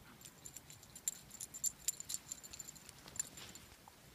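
Metal tags on a dachshund's collar jingling as the dog moves about in snow: a quick, irregular run of small bright clinks that thins out in the last second.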